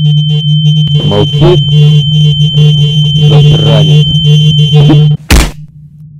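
A loud film sound-effect bed: a steady electronic low drone with a thin high tone and a quick pulsing beat over it. It cuts off with a sharp, heavy hit about five seconds in, after which it goes much quieter.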